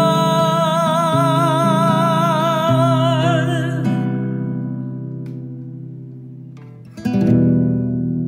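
End of a song with singing and guitar: a singer holds one long note with vibrato over guitar, the voice stops about four seconds in, and the guitar rings down. A final strummed guitar chord comes about seven seconds in and rings out.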